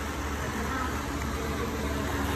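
Jeweler's gas torch flame burning steadily with an even hiss, heating gold on a charcoal block.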